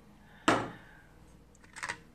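Handling of the pressure cooker's plastic accessories. There is one sharp knock about half a second in, then a few light clicks near the end as the spatula is lifted off the perforated steaming tray inside the pot.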